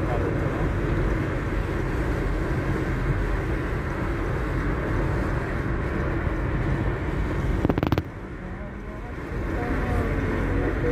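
Steady road and engine noise heard inside a moving car's cabin. Just before eight seconds in there is a brief loud crackle, after which the noise is quieter for about a second and a half before it returns.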